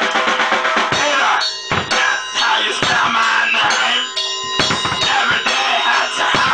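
Loud music with a drum beat, bass drum and snare hits, and a voice over it.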